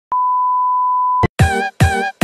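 The steady test-tone beep that goes with TV colour bars, held for just over a second and then cut off. Right after it, music begins with short notes repeating about twice a second.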